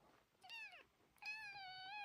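Young tabby kitten meowing twice: a short call falling in pitch about half a second in, then a longer, nearly level high-pitched meow from just past a second in.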